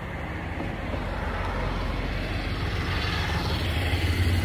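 Road traffic: a motor vehicle's engine and tyres, growing steadily louder as it draws near.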